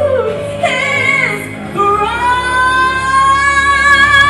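A woman singing gospel live into a handheld microphone, amplified through the hall's sound system. A short phrase bends up and down, then from about halfway through she holds one long note.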